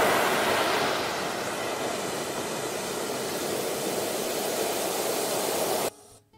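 Sea surf: breaking waves as a steady rushing wash, loudest at the start and easing slightly, then cut off abruptly just before the end.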